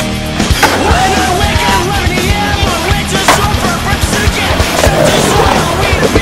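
Skateboard sliding along a metal flat rail with a scraping grind, and the wheels rolling and knocking on concrete. One sharp clack of the board hitting the ground comes about three seconds in. Music plays underneath.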